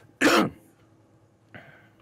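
A man gives one short, throat-clearing cough into his fist.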